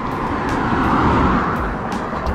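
A Perodua Myvi hatchback driving past on the road, its tyre and engine noise swelling to a peak about a second in and then fading.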